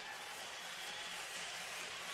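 Faint, steady hockey arena ambience: low crowd murmur and rink noise under a pause in the broadcast commentary.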